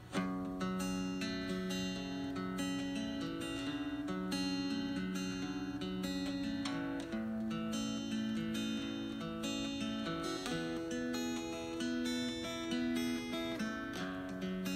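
Solo steel-string acoustic guitar playing a steady pattern of picked notes over a repeating low bass line, starting abruptly.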